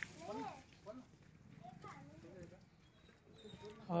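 A few faint short vocal calls in the background, each rising and falling in pitch, mostly in the first half.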